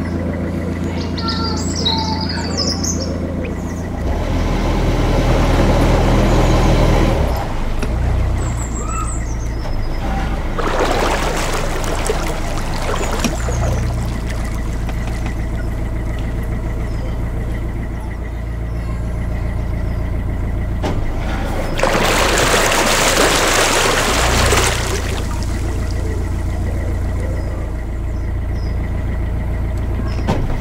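A narrowboat's diesel engine running steadily at cruising speed, a low even thrum. Three times a rushing noise swells up for a few seconds, and birds chirp briefly near the start.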